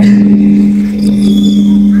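A steady low hum held at one unchanging pitch, with a fainter tone above it.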